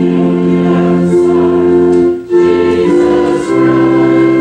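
Church hymn with organ and singing: held chords in phrases, with a brief break for breath a little over two seconds in.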